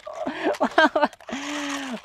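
A man's voice: a few quick syllables, then one drawn-out vocal sound near the end.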